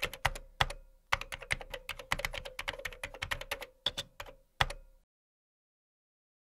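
Computer keyboard typing in quick runs of keystrokes with short pauses, stopping about five seconds in.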